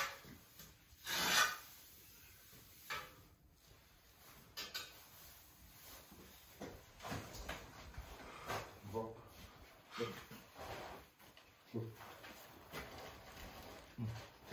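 A hand rake scraping and dragging hay across a hard stable floor in irregular strokes, the loudest scrape about a second in.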